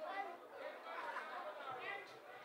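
Faint chatter of several people talking at once in the background, with no one speaking into the microphone.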